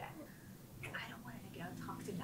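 Quiet whispered speech.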